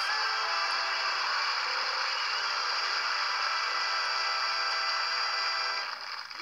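Audience applauding at the end of a song, with the band's music still sounding faintly beneath it.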